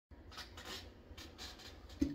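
Faint handling and rustling noise, a few soft swishes over a low room rumble.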